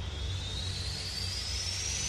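Future bass demo music in a build-up: a rising noise sweep with a thin tone gliding steadily upward over a low sustained bass, slowly getting louder, as a riser effect before a drop.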